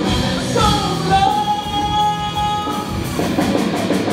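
A live rock band with electric guitar, bass guitar and drums playing, the male singer sliding into a long held note about half a second in and holding it for about two seconds before singing on.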